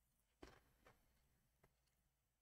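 Near silence: room tone, with three faint short clicks, the first about half a second in the loudest.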